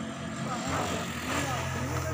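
Pickup truck engine idling with a steady low hum that grows stronger about a second in, while men's voices call out over it.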